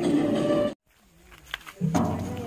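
Background music that cuts off abruptly under a second in, followed by a brief silence and a few faint clicks; a low pitched sound starts near the end.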